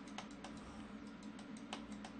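Faint, irregular clicks from working a computer's mouse and keys, a few each second, over a low steady hum.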